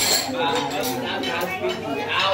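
Ceramic bowls, plates and spoons clinking as food is served out at a crowded dining table, with several people talking over it.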